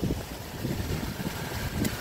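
Wind buffeting a phone microphone at an open car window: an uneven low rumble with gusts, and a brief click near the end.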